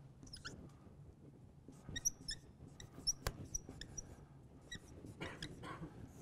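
Dry-erase marker squeaking against a whiteboard as it writes: a faint series of short, high-pitched squeaks, with one sharp click a little past the middle.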